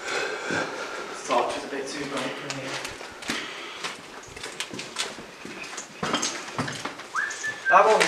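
Men talking quietly in a small echoey brick corridor, with scattered clicks and scuffs of footsteps on a debris-strewn floor; louder talking starts near the end.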